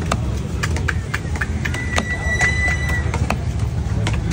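A heavy curved fish-cutting knife chopping red snapper on a wooden block: a quick, irregular run of sharp knocks, about two or three a second, over a steady low rumble of background noise. A high steady whistle-like tone sounds for about a second midway.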